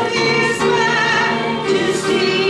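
Church congregation singing a hymn, with a woman's voice at the microphone leading, in long held notes that move from one pitch to the next.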